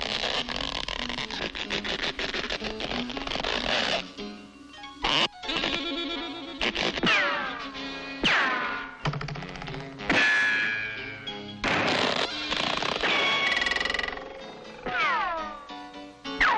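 Cartoon music score with comedy sound effects. It opens on a busy, dense passage, then from about four seconds in breaks into sharp hits and several quick downward-sliding tones.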